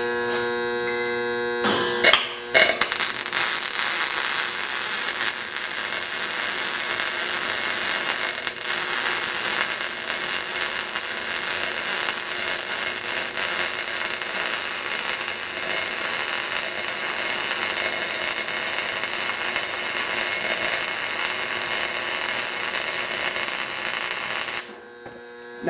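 MIG welding arc running a root bead on a pipe coupon. After a short burst about two seconds in, it settles into a steady crackling sizzle.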